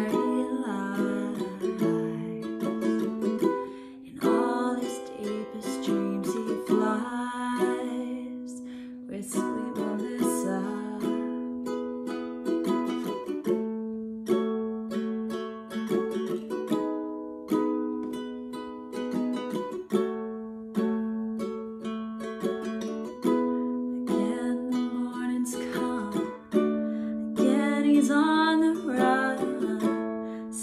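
Ukulele played solo in an instrumental passage: a steady run of plucked notes and chords with no singing over it.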